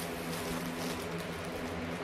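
Thin plastic carrier bag rustling and crinkling as a hand rummages inside it, over a steady low hum.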